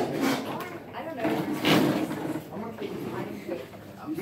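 Indistinct chatter of several students talking in a classroom, louder for a moment about halfway through.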